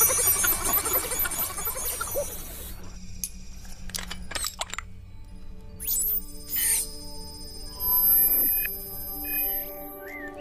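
Electronic sci-fi film score and sound effects. It is busy for the first two seconds, then thins to scattered clicks and beeps, with a quick pitch sweep about six seconds in and held synth tones near the end.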